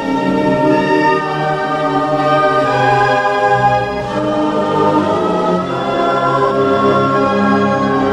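Soundtrack music with a choir singing long held notes.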